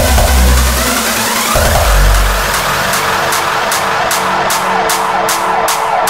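Hardstyle electronic dance music: the pounding bass kick drops out about two seconds in, leaving a breakdown of sweeping, gliding synth effects over held tones, with a rhythmic noise hit about two to three times a second.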